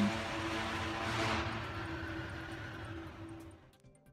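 Background music with a steady held tone and a swell about a second in, fading out near the end.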